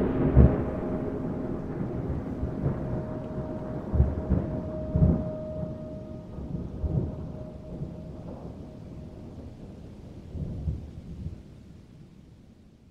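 Thunderstorm sound bed: irregular low rumbles of thunder over a rain-like hiss, with a single held tone lingering under it for the first several seconds, the whole fading out slowly.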